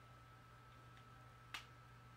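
A single sharp click about one and a half seconds in: the catch on the side of a Behringer DR600 effects pedal giving way as a pen pushes in on its release dot, to free the battery cover. Otherwise near silence with a faint low hum.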